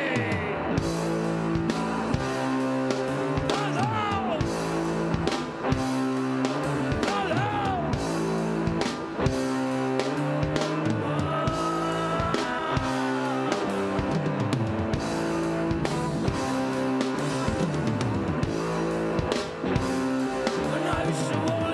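A rock band playing live through an instrumental passage, with guitar over a steady drum beat and no vocals.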